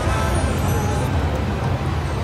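Kitty Glitter slot machine paying out a win, its credit meter counting up, over the steady din of a casino floor.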